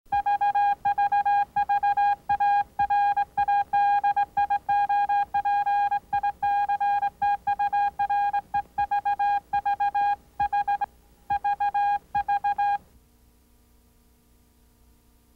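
Morse-code beeping of the RKO Radio Pictures logo: one buzzy high tone keyed on and off in irregular short and long pulses, stopping suddenly about a second before the end.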